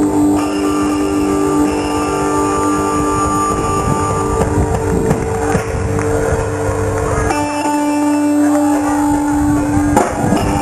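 Live rock band playing, with electric guitar holding long sustained notes over bass and drums. About seven seconds in, the low end drops away and the held notes carry on.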